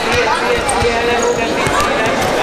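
Wrestlers' feet thudding and shuffling on a foam wrestling mat, several dull thuds as they grapple. Voices of spectators and coaches run beneath in a large hall.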